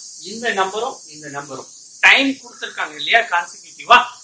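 A man speaking, explaining in short phrases, over a constant high hiss.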